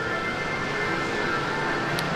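Background music over a steady hum, with a few faint held notes.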